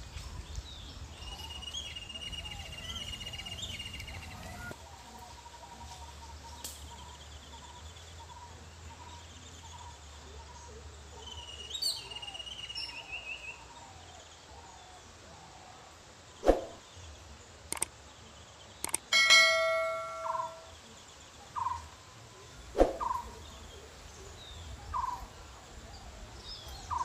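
Outdoor ambience with birds chirping and calling at intervals. Past the middle come a few sharp strikes; the loudest, about three-quarters of the way through, is a single metallic strike that rings like a bell and fades over about a second and a half.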